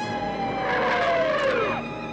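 A police car pulls up, its siren winding down in a falling wail that dies away just before the end, with tyres squealing as it brakes about two thirds of a second in.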